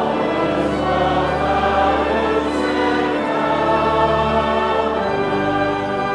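Church congregation singing a hymn's closing line to pipe organ accompaniment, in sustained chords; the organ's bass notes drop out near the end.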